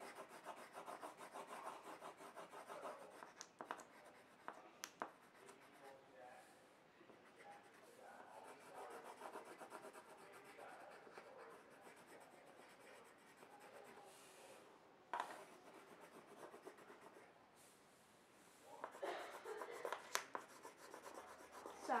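Faint scratching of a coloured pencil shading on paper, rapid back-and-forth strokes in stretches, with a few sharp clicks in between.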